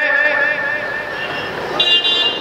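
A pause in amplified speech over a background haze. A steady high tone rings on after the voice stops and fades out, then near the end a steady chord of several high tones, like a horn, begins.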